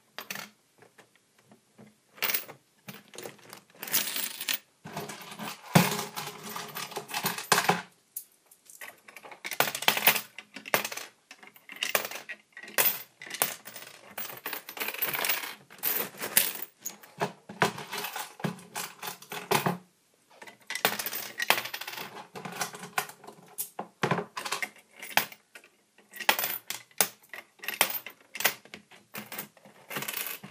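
Coins clinking and clattering in a Lego coin pusher as they are dropped in and jostle against the pile, in repeated bursts of clatter with brief lulls about a quarter and two-thirds of the way through.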